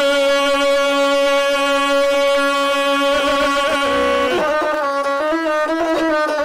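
Gusle, the single-string bowed Balkan folk fiddle, played with a long held, steady note, then quicker shifting notes from about four seconds in.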